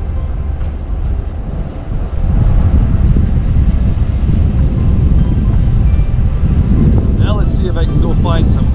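Low rumble of a car driving slowly, growing louder about two seconds in.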